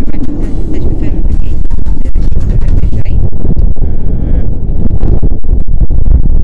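Strong wind buffeting the camera's microphone: a loud, continuous low rumble.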